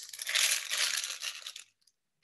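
Rustling handling noise as a food item is picked up and held up close to the microphone, stopping about one and a half seconds in.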